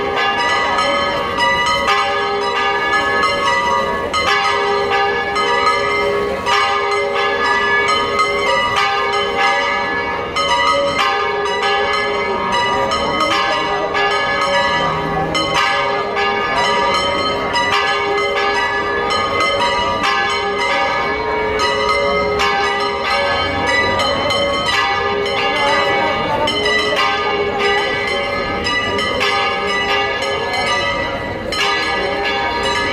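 Church tower bells ringing continuously in a fast peal: many overlapping strikes over a sustained, many-toned ring.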